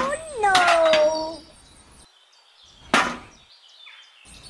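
A high-pitched, drawn-out cry, like a cartoon voice or a meow sound effect, that falls a little in pitch over the first second and a half. About three seconds in comes a short swish of noise.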